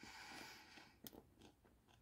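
Faint crunching as a fresh baguette is bitten into and chewed, with a single click about a second in.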